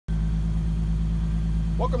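2015 Infiniti Q40's 3.7-litre V6 idling steadily, heard at the dual exhaust as a low, even hum.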